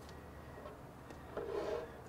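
Quiet tabletop handling: a few faint ticks and rubs as a plastic ink-bottle cap is set down and a fountain pen is picked up.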